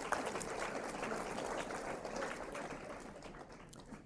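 Audience applauding, the clapping gradually dying away toward the end.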